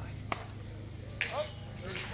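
A baseball landing in the catcher's mitt with one sharp pop: a first-pitch curveball caught for a strike. About a second later a voice gives a short call.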